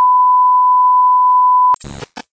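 A loud, steady test-tone beep (a single pure tone, as played with TV colour bars) that cuts off abruptly near the end. It gives way to a few short crackles of glitchy static.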